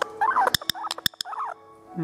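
A parrot giving three short, harsh squawks in quick succession, with several sharp clicks between them. Faint background music runs underneath.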